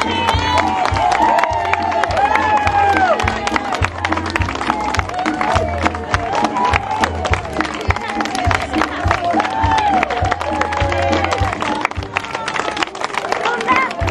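A crowd clapping continuously, many hands at once, over music with a steady low beat and a melody.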